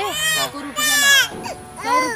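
A toddler's high-pitched cries: two long wavering wails in the first second and a half, and a shorter one near the end.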